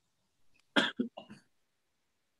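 A person coughing over a video call: three quick coughs close together a little under a second in, the first the loudest.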